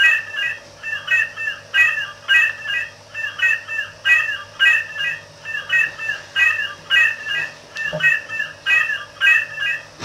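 Circuit-bent bird song calendar sound strip playing a short sampled bird call over and over, retriggered about twice a second by a 555 oscillator circuit. Each repeat is the same quick chirping phrase, so the sound is a steady electronic loop rather than a natural song.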